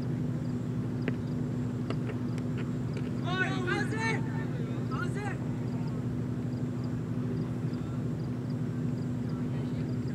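A sharp knock of the ball about a second in, then cricket fielders and the wicketkeeper shouting an appeal about three seconds in, with a shorter shout about a second later. A steady low hum runs underneath.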